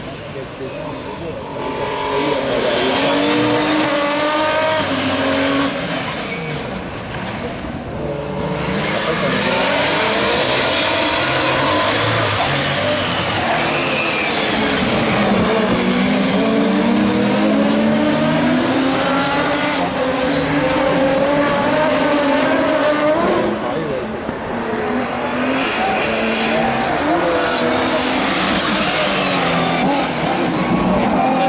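Super 1600 rallycross cars' four-cylinder engines revving hard as they race round the circuit, the pitch climbing and dropping again and again with throttle and gear changes.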